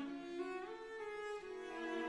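Background music: bowed string instruments playing slow, sustained notes that move in steps from one pitch to the next.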